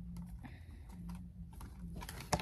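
Faint, soft, irregular clicks of a tarot deck being shuffled by hand.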